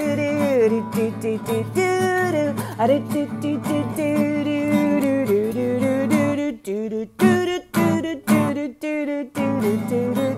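Music: an acoustic guitar strummed through an instrumental break between verses, with a voice carrying the tune without words over it. Near the end it turns choppy, with short sharp accents and brief gaps.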